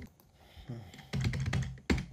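Computer keyboard keys clicking as numbers are typed in: a handful of separate keystrokes, the loudest just before the end.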